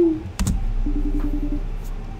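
A single sharp click as the video is started, then the quiet opening of the music video's soundtrack: a low hum and a soft, rapidly pulsing note.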